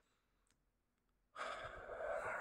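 A man's long sigh, breathed out close to the microphone, starting a little past halfway after near silence.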